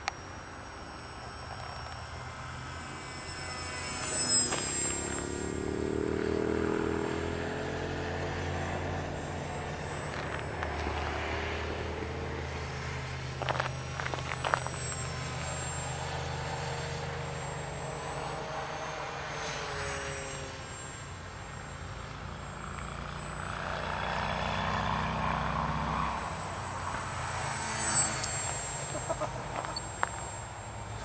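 Electric motor and propeller of a Hacker SkyCarver radio-controlled glider in powered flight, the pitch rising and falling as it passes. A few short loud bursts stand out, about four seconds in, around the middle and near the end.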